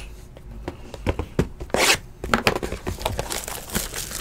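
Trading cards and clear plastic wrapping being handled: scattered small clicks, rustles and crinkles, with one brief louder rustle about halfway through.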